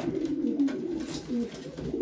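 Domestic pigeons cooing, a continuous low-pitched sound.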